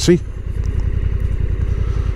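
Honda NT1100's parallel-twin engine running as the bike rolls through a junction, a steady low throb.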